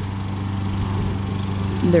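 Steady drone of a small engine running at constant speed, with no change in pitch, such as a lawn mower running in the background.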